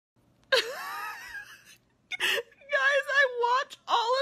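A woman's high, wavering voice, half laughing and half crying: a loud breathy gasp that rises in pitch about half a second in, a short sharp breath near two seconds, then a drawn-out wavering wail.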